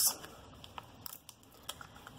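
Faint paper rustling and a few light clicks as a sheet of Mini Stampin' Dimensionals (paper-backed foam adhesive squares) is picked up and handled.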